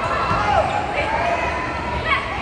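Volleyball rally in an indoor arena: voices calling and shouting over the hall's background noise, with the ball being struck and players moving on the court.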